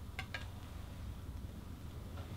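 Two quick metallic clinks of a knife against cutlery or a plate, each with a short ring, over a low steady hum.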